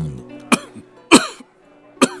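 A man coughing twice, the second cough louder, over soft background guitar music.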